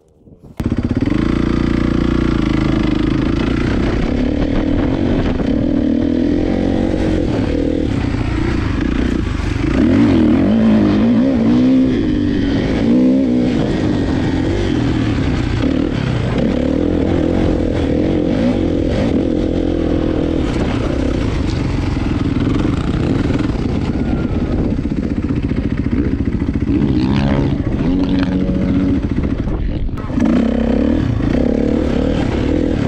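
Kawasaki KX450F dirt bike's single-cylinder four-stroke engine running under way while ridden, its revs rising and falling continuously with the throttle. It starts suddenly about half a second in.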